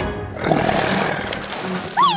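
Cartoon monster growl, a rough rumbling vocal effect starting about half a second in, over background music.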